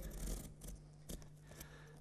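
Sharp knife cutting through a cardboard box: a scraping cut in the first half-second, then a few short, faint scraping strokes.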